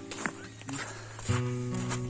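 Background music: soft instrumental notes, growing louder as new notes come in about a second and a half in.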